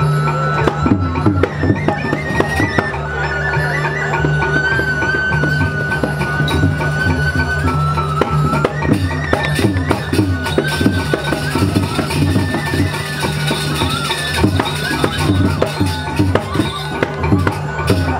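Balinese gamelan playing the accompaniment for a Barong Ket dance: a high held melody line stepping between a few notes over quick struck metal and drum strokes, with a steady low hum underneath.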